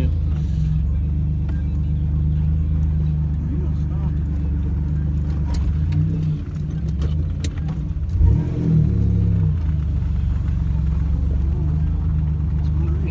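Buick Grand National's turbocharged V6 running steadily, heard from inside the cabin on the move. A little past halfway the engine note drops, then rises sharply as the car accelerates again.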